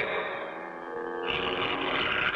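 Cartoon background music with sustained held notes. About a second and a quarter in, a harsh, hissing noise joins over it.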